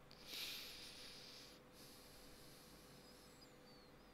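Faint breathy puff of air near the microphone, about a second long, a person's sniff or exhale. A few faint, thin high chirps come near the end.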